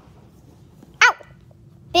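A short, high-pitched shout of "Ow!" about a second in, a cry of pain at being bitten, followed at the very end by the start of a second short exclamation.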